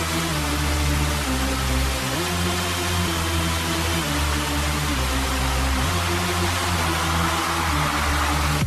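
A sports pump-up music mix playing: sustained bass chords that change every second or two, with a swell of noise building near the end.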